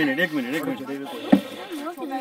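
Voices talking in a sing-song way, with one sharp click a little past halfway.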